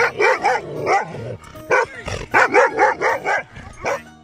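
Dog barking repeatedly at a cyclist, in quick runs of short barks with a brief pause about a second in.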